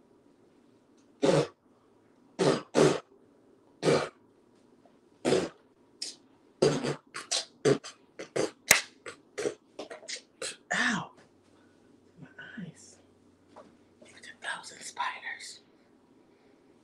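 A woman's voice making short, sharp non-word vocal sounds, a few spaced out at first, then many in quick succession, followed by one drawn-out voiced sound and some breathy whispering near the end.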